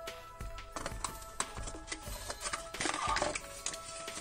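Background music with light clicks and paper rustling as a small toy and its folded paper leaflet are handled, the rustling heaviest about three seconds in.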